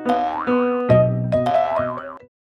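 Bouncy comedic background music with a springy cartoon sound whose pitch bends up and back down twice.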